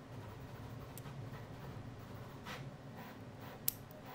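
Small handling sounds of tweezers and a plastic thermistor plug at the Elegoo Neptune 4 Plus hotend's circuit board: a few light clicks, then one sharp click near the end as the plug is pushed into its socket, over a low steady hum.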